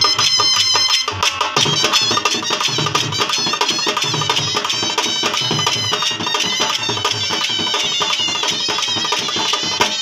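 Punjabi dhol drums played in a fast, driving rhythm with a pair of shehnais playing a wavering, high reedy melody over them. The deep bass beats of the dhols are mostly missing for about the first second, then come back in.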